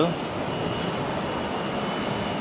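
Steady background noise of city street traffic, with no single distinct event.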